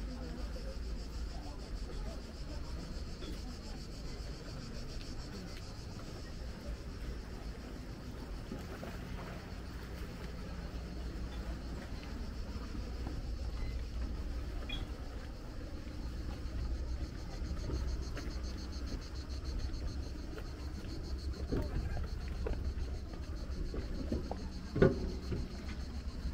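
Outdoor walking ambience: a steady low rumble under a continuous high insect buzz that grows stronger in the last few seconds, with one sharp knock about a second before the end.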